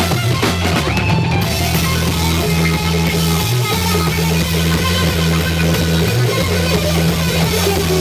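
Live heavy blues-rock power trio playing an instrumental passage at full volume: distorted electric guitar, electric bass and drum kit together, with the bass holding long, loud notes.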